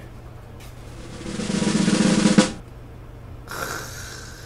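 Snare drum roll sound effect, building in loudness for a second and a half or so and cutting off abruptly, a reveal cue for the finished dish.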